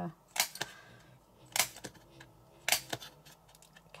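A handheld hole punch snapping through card, three sharp clicks about a second apart, with a few lighter ticks between. A faint snore from a sleeping pet runs underneath.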